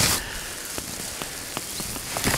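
A hooked carp splashing and thrashing at the surface of shallow water as it is played toward the landing net, with water pattering and a few small sharp splashes.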